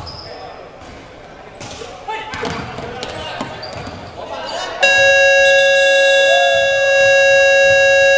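Basketball bouncing on a hardwood court with players' voices echoing in a large gym, then about five seconds in a loud gym scoreboard buzzer sounds, a steady held tone.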